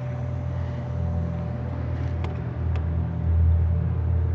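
A low, steady rumble that swells and eases, with a faint constant hum underneath and a couple of faint clicks about two and a half seconds in.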